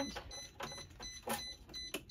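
A series of sharp clicks about every half second, several with short high electronic beeps, from the school bus's dashboard controls being worked.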